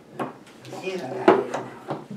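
Wooden dollhouse pieces being handled, giving short wooden knocks and clatter: one a fifth of a second in and a louder one a little past the middle.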